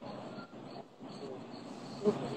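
Faint steady background noise with a faint high-pitched chirp repeating several times a second.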